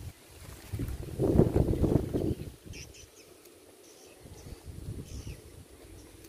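Wind rumbling on the microphone in a gust about a second in, then a quieter outdoor background with a few faint bird chirps.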